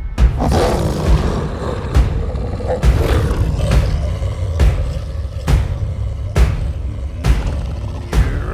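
Film soundtrack: a deep, menacing wolf growl over heavy, evenly spaced thuds of a slow pounding beat, a little more than one a second.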